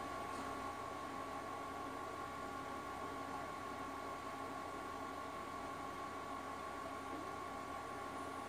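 Steady low hiss and hum with a thin, unchanging high tone running through it; no music or speech is heard from the laptop.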